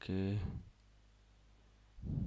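A man's voice says a short word, then near silence: quiet room tone with one faint click shortly after.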